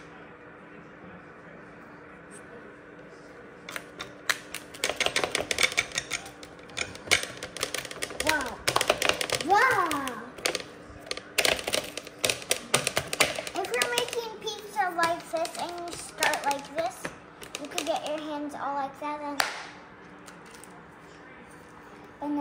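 Hands patting and slapping floured pizza dough flat on a metal pizza pan: rapid runs of taps that start about four seconds in and stop near the end, with a child's voice between them and a steady low hum underneath.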